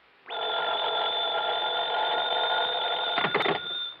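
An old electromechanical telephone bell ringing steadily for about three and a half seconds, a radio-drama sound effect. A few clicks come near the end and the ring cuts off as the receiver is picked up.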